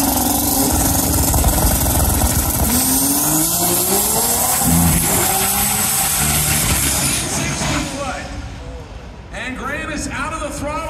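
Manual-transmission drag car making a full-throttle pass. The engine pitch climbs in each gear and drops back at each shift, then the sound fades away after about seven seconds.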